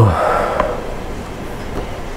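A man's short sigh, falling in pitch right at the start, then a steady low room hum.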